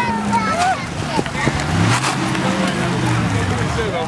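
Voices of onlookers talking, with a pickup truck's engine running low underneath as the truck drives slowly past at close range.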